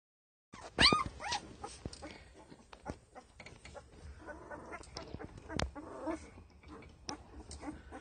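Ten-day-old Doberman puppies squealing and whimpering. One loud, high squeal about a second in is followed by a fainter one, then quieter whimpers and grunts with soft rustling and small clicks as the puppies squirm against each other.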